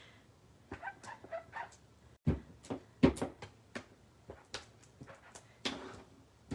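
Sharp clicks and knocks of clear acrylic stamp blocks being handled on the craft table as the stamps are wiped clean on a chamois. The loudest knocks come about two and three seconds in, with faint short vocal sounds about a second in.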